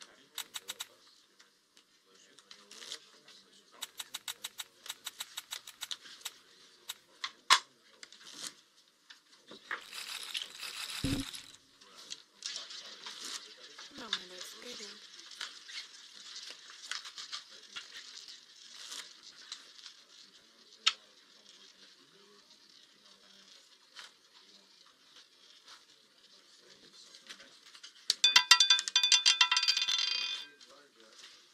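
Rapid clicks as betting chips are placed on an online roulette layout, then a live roulette ball whirring around the spinning wheel. Near the end it clatters loudly as it bounces into a pocket.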